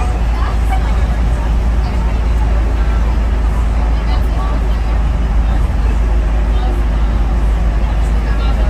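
Steady low rumble of a vehicle driving through a road tunnel, heard from inside the vehicle, with indistinct voices chattering in the background.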